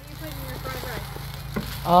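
A steady low mechanical hum like an idling engine, with faint voices behind it. A woman's voice starts near the end.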